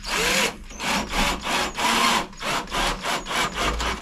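Cordless drill-driver driving a wood screw into screen-printed plywood, running in a series of short pulses that come quicker toward the end.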